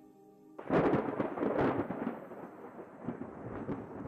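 A thunderclap breaking suddenly under a second in, then rumbling and slowly dying away.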